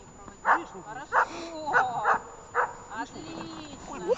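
German shepherd barking during bite work, about five short barks in the first two and a half seconds, with people's voices between them.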